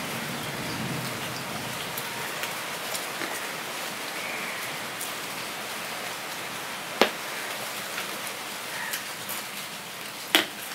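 A steady, even hiss, over which a steel plate gives one sharp clink about seven seconds in, with faint ticks from fingers and rice on steel dishes.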